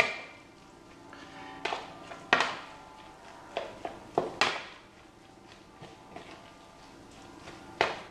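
A metal spoon mixing minced-meat stuffing in a bowl: soft stirring with several sharp, irregular clinks of the spoon against the bowl, the loudest a little past two seconds and near four and a half seconds.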